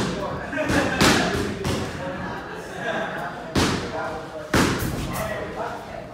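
Sharp thuds and slams in a boxing gym, about five in six seconds, spaced unevenly, over indistinct voices talking in the background.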